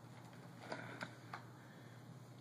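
A Yorkie gnawing at a hard chew treat, with about three faint clicks of teeth near the middle.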